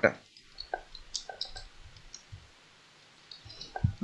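Computer keyboard being typed on: faint, irregular key clicks in short runs, with a pause before a last cluster near the end.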